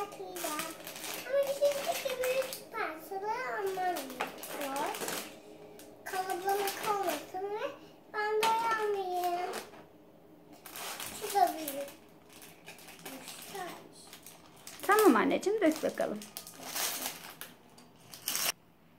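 A young child's voice on and off, loudest near the end, over light clicking and rattling of small plastic Lego bricks and the rustle of a plastic bag as the pieces are tipped out and handled.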